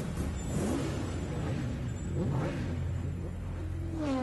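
Racing motorcycles going past at high speed, twice, the engine pitch sweeping sharply as each one passes.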